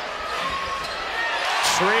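Basketball game sound from the arena floor: a ball bouncing and sneakers squeaking on the hardwood over steady crowd noise, with a sharp impact about a second and a half in.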